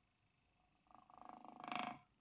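Glass-syringe thermoacoustic heat engine running: its piston oscillating rapidly in the barrel gives a faint, fast buzz that starts about a second in and grows louder.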